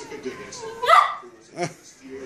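Mastiff puppy yapping: two short, high yaps, a louder one with a rising pitch about a second in and a shorter one just after.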